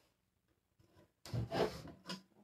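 A painted dresser drawer sliding part-way out with a short rub, about a second in, after a near-silent start.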